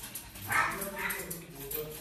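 A small dog vocalising in short sounds: two sharper ones about half a second apart, then a softer drawn-out one near the end.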